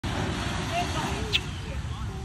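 Steady low rumble of surf and wind at the shore, with faint voices and one brief high squeak about halfway through.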